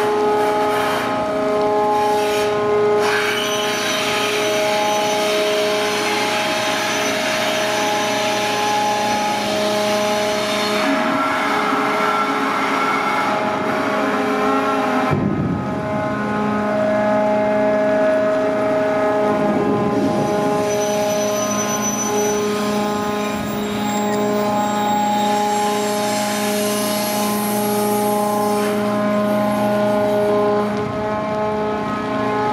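The crane machinery of a giant grab dredger runs with a steady whine of several held tones while the grab bucket is held aloft and turned. The lower hum shifts briefly about halfway through.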